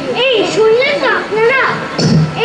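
Speech only: a girl speaking her lines on stage, her voice rising and falling in pitch.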